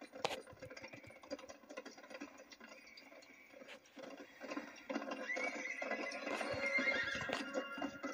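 Cartoon soundtrack heard through a CRT television's speaker: horses' hooves clip-clopping and a horse neighing, louder from about five seconds in.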